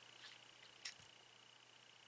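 Near silence, with one faint click a little under a second in from the metal sections of a rebuildable vape tank being unscrewed from its glass tube.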